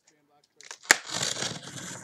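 A sharp click just under a second in, then about a second of scratchy rasping as a box cutter slits the packing tape along a cardboard card case.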